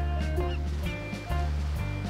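Background music: plucked notes over a bass line that changes note about every half second.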